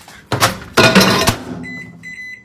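Two short noisy knocks in the first second or so, then a microwave oven's keypad beeping once near the end as a button is pressed.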